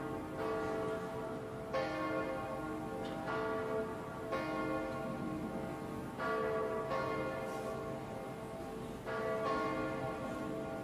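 Church bells ringing: irregular strokes every one to two seconds, each ringing on into the next.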